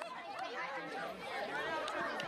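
Crowd chatter: many voices talking at once.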